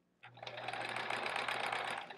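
Domestic sewing machine stitching at a steady, slow speed, starting a moment in and stopping near the end. It is sewing a quarter-inch seam through thick, very puffy batting.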